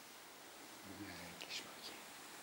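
A person's soft, whispered murmur, briefly voiced about a second in and then a few hissy whispered sounds, over faint room hiss.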